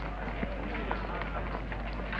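Indistinct chatter of many overlapping voices, no single speaker clear, over a steady low hum. Two brief sharp sounds stand out, about half a second and a second in.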